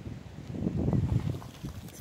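Wind gusting against the microphone as a storm blows in: a low rumble that swells about half a second in and dies down after about a second and a half.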